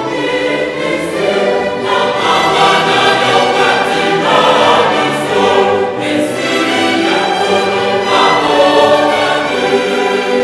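A large choir singing sustained chords with orchestral accompaniment, swelling slightly louder after the first couple of seconds.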